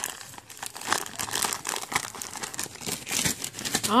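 A toy's packaging crinkled and torn open by hand, an irregular run of crackles and rustles as the toy is worked out of it.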